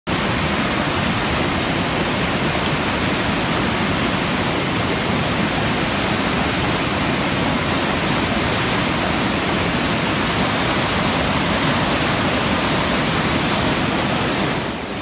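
Flooded creek, swollen by heavy rain and running unusually high, rushing over rocks in churning rapids: a steady, loud roar of water.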